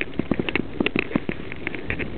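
Mountain bike rattling fast over a rocky trail: rapid, irregular clicks and knocks over a steady rushing noise.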